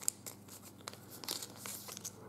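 Foil trading-card pack wrapper crinkling and crackling as the cards are slid out of it, with a sharp click just after the start.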